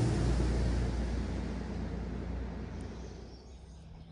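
A vehicle crossing the bridge overhead: a low rumble and road noise that fade away steadily over about three seconds.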